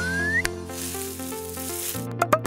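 Short electronic logo jingle: a held low chord under a whistle-like tone that glides upward and ends in a sharp click about half a second in, followed by a hiss with a run of short stepping notes.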